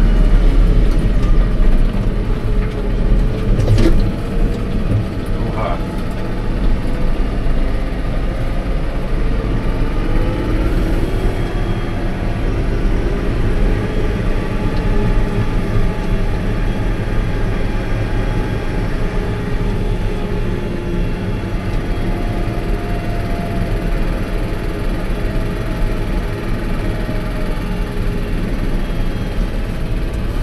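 Fendt Vario tractor heard from inside its cab while driving: a steady low engine drone, with tones gliding up and down as the engine speed changes. A couple of short knocks come about four and six seconds in, and the sound is a little louder for the first few seconds before settling.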